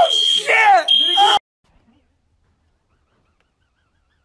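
Fire alarm sounding a steady high tone that breaks off and comes back in short stretches, with a man laughing over it. Both cut off abruptly about a second and a half in, and near silence follows.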